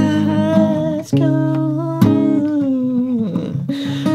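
Acoustic guitar strummed under a man singing long held notes, with no clear words; the voice glides down near the end.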